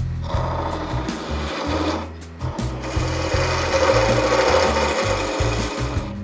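A skewchigouge (skew chisel–spindle gouge hybrid) taking a push cut along a spinning wooden spindle on a lathe: a continuous shaving, rasping sound of the edge cutting wood. It breaks off briefly about two seconds in, then comes back louder for most of the rest.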